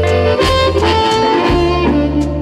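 Electric blues band playing an instrumental: a held lead melody over low bass notes, with a few drum strikes.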